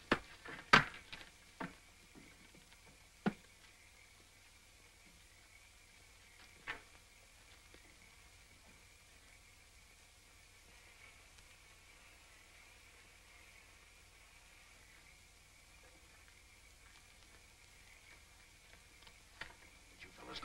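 Quiet, steady hiss of an old film soundtrack with no dialogue or music, broken by a few short sharp knocks in the first few seconds and one more about seven seconds in.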